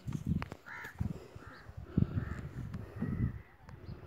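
A bird calling several short times, with a few thin held tones near the end, over repeated low rumbling bursts of noise on the microphone.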